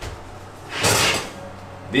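A kitchen drawer or cupboard being pulled open, heard as one brief sliding rush about a second in.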